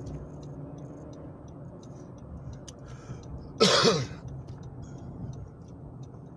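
A man clears his throat once with a short, loud cough about three and a half seconds in, heard inside a moving car over the steady hum of engine and road. Faint ticking runs underneath.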